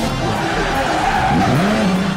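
Promo jingle music with a car sound effect laid over it: an engine revving up and down, with tyres skidding.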